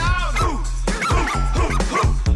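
Upbeat pop music with a steady bass beat and high, cartoonish voices singing short phrases that swoop up and down.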